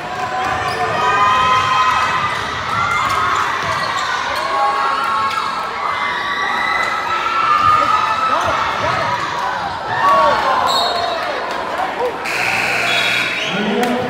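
Basketball game in a gym: the ball bouncing on the hardwood while players and spectators shout. Near the end a steady signal tone sounds for about a second.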